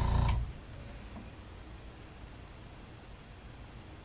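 Airbrush air compressor running with a steady hum and hiss, then cutting off with a click a fraction of a second in. After that there is only faint room tone.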